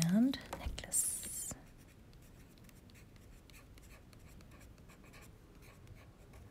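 Caran d'Ache Luminance coloured pencil writing on sketchbook paper: one brief, louder scratchy stroke about a second in, then faint light strokes. A short hummed voice sound comes right at the start.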